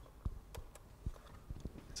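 Faint, irregular clicking from a laptop being operated, about half a dozen short taps over two seconds.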